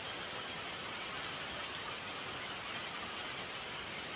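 Steady rain, an even hiss with nothing else standing out.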